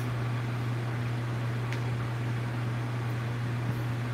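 Room tone: a steady low hum under an even hiss, with a couple of faint ticks.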